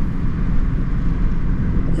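A car being driven, heard from inside the cabin: a steady low rumble of engine and tyre noise.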